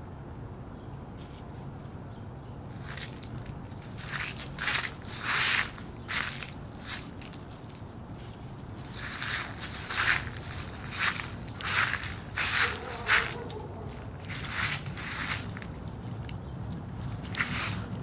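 Footsteps crunching through dry fallen leaves, one step every half second to a second, in a run starting about three seconds in and another after a short pause.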